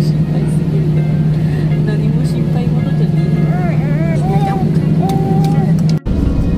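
Airliner jet engines at takeoff power, heard inside the cabin during the takeoff run: a loud, steady drone with a low hum under it.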